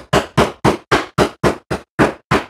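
Wooden mallet pounding ice in a canvas Lewis bag on a bar top, a steady run of hard thuds about four a second, crushing the ice down to a fine shave.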